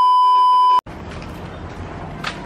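A TV test-tone sound effect: one steady, loud high beep lasting just under a second and cutting off abruptly. Quieter steady outdoor background noise follows it.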